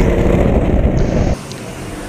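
Go-kart engine running at speed, heard loud and close from on board. About two-thirds of the way through it cuts off suddenly to a quieter, more distant kart engine passing on the track.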